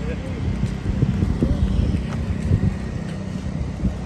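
Street traffic with wind buffeting the microphone in an uneven low rumble, and faint voices in the background.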